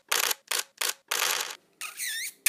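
Animated logo sound effect: a quick run of short clicking bursts, about three a second, the last one longer, then a squeaky chirp near the end.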